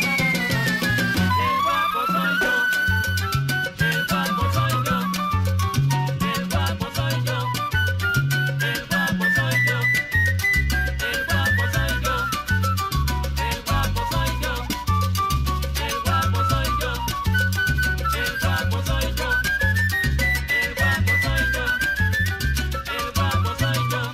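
Instrumental salsa music: a solo melody line running quickly up and down over a bass line and percussion.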